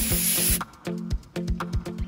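Background music with a steady beat; over it, a solid model rocket motor's loud hissing burn cuts off sharply about half a second in.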